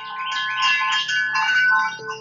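Gentle ambient music: a cascade of high, shimmering chime notes over held bell-like tones, swelling in over the first half second.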